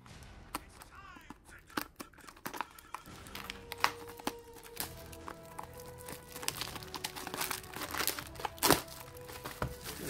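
Clear plastic shrink wrap crinkling and tearing as it is pulled off a cardboard booster box: a run of irregular crackles with one louder sharp crack near the end.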